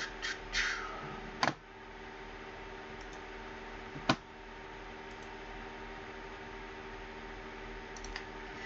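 Electric desk fan running steadily, with a few sharp clicks, the clearest about one and a half seconds in and again about four seconds in.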